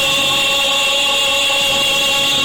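A male singer holding one long, steady note of a Spanish-language song into a microphone, with musical accompaniment under it.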